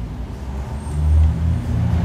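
A low, steady rumble of background noise that swells briefly about a second in.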